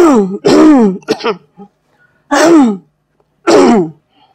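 A person's voice giving a run of loud, short cries without words, each sliding down in pitch, with short gaps between them.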